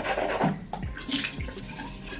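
Tap water running and splashing into a bathroom sink basin while a toothbrush rinse cup is filled. A short rush of water at the start is followed by a few separate splashes and gurgles.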